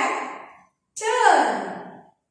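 A woman's voice in two short, breathy phrases, each falling in pitch and fading away.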